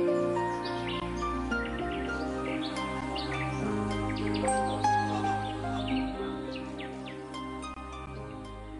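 Calm instrumental background music of long held notes, with birdsong chirping over it throughout, easing down a little near the end.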